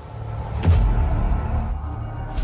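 Low, rumbling horror-film score swelling up, with a sudden hit under a second in.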